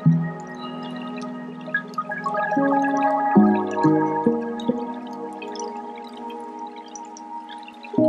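Lo-fi hip hop instrumental: soft held chords that change a few times in the middle, with faint scattered clicks above them.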